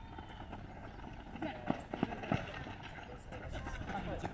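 Football match on a dirt pitch: players' footfalls and the ball being kicked, with a few sharp knocks a little past the middle, over distant players' shouts.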